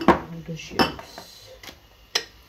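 Crockery being handled: three clinks and knocks of dishes, the loudest just under a second in.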